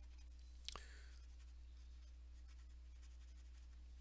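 Near silence: room tone with a steady low hum and a single faint click under a second in.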